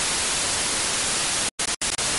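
Steady white-noise static like an untuned TV, a glitch sound effect laid over a video transition. It cuts out twice for an instant near the end.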